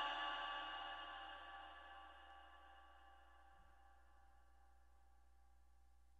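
The reverberation of a male Quran reciter's last held note, dying away smoothly over the first two seconds, then near silence: room tone.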